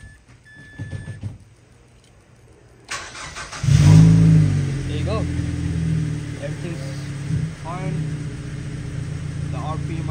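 The 2005 Mazda 3's 2.3-litre naturally aspirated inline-four cranks about three seconds in, catches, flares up loudly and settles into a steady idle. This is its first start after an E85 flex-fuel kit was fitted, and it starts and runs well.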